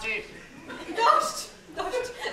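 A person's voice with chuckling laughter, in short bursts, the loudest about a second in.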